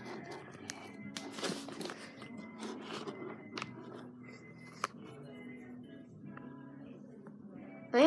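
Faint background music, with a few light clicks and knocks of wooden toy blocks being handled and set on a block tower; the sharpest click comes just before five seconds in.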